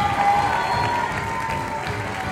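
Theatre audience applauding and cheering over the onstage band's curtain-call music, with one long held note fading out about a second and a half in.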